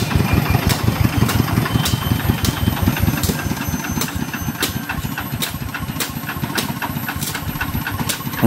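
Diesel engine of a two-wheel walking tractor running with a regular sharp clatter, about three knocks a second. It grows gradually fainter.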